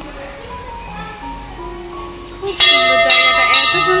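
A brass temple bell hanging in a shrine doorway, rung by pulling its rope: three strikes about half a second apart starting a little past halfway, each leaving a bright, sustained ring.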